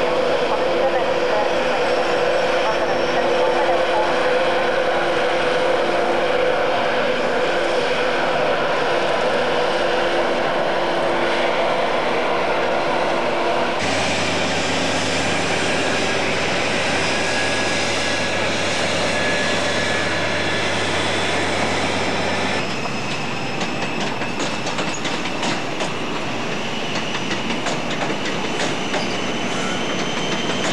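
Diesel power car of a High Speed Train running and pulling out, its engine note changing about a third of the way through. In the last third, the wheels click over the rail joints as the coaches roll past.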